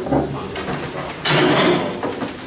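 Handling noises at a table close to its microphone: a low thump just after the start and some light knocks, then a loud scraping rustle lasting about half a second a little after the middle.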